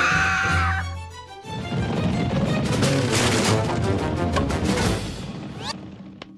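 Cartoon soundtrack: busy action music with a short vocal cry about the first second, then a dense, noisy stretch that fades near the end, closing with a quick rising sweep.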